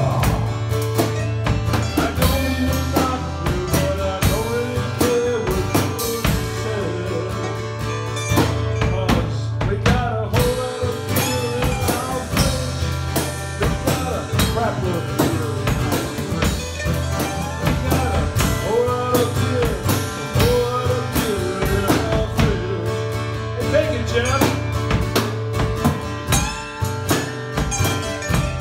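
A small live band playing a bluesy country-rock song: two acoustic guitars strummed over a drum kit keeping a steady beat.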